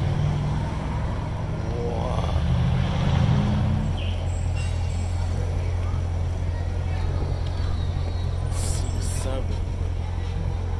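Chevrolet Corvette C7's 6.2-litre V8 idling with a low, steady rumble, its pitch lifting a little about two seconds in before settling back to an even idle.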